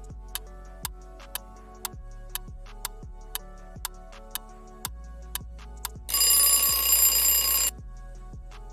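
Quiz countdown sound effect: a clock ticking about twice a second over a soft music bed. About six seconds in, an alarm-clock bell rings loudly for about a second and a half, signalling that time is up.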